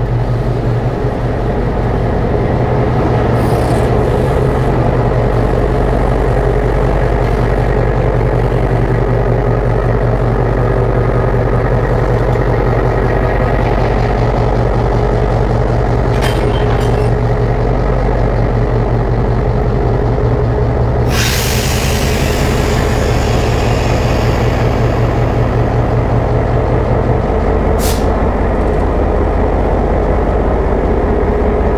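Diesel locomotive engine running steadily as the locomotive moves alongside the platform to couple onto its train. About two-thirds of the way through, a loud hiss of released brake air starts and fades over several seconds, with a few sharp clicks around it.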